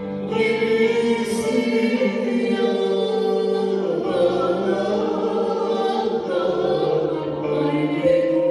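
A woman singing a Turkish folk song (türkü) into a microphone over a bağlama (saz) ensemble.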